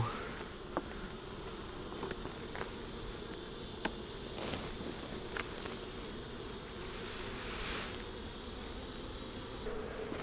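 Honey bees buzzing steadily around an open hive, with a few faint clicks from frames being handled.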